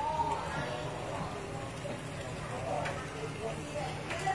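Several people talking in the background, words unclear, over a steady low hum.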